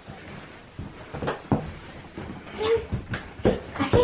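Winter clothes being rummaged through in a plastic storage bin: scattered rustling and light knocks as items are pulled out, with a brief short vocal sound about two and a half seconds in.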